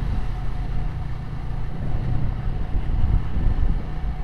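Yamaha New Vixion motorcycle riding along at a steady speed: a steady low rumble of engine and road noise mixed with wind buffeting the action camera's microphone.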